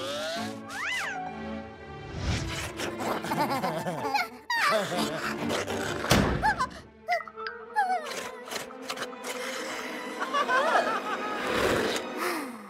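Cartoon background music mixed with the characters' wordless gliding vocal noises and a couple of dull thuds, about two and six seconds in.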